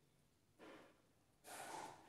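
Two faint, soft breaths, the first about half a second in and a slightly longer one near the end, against near silence.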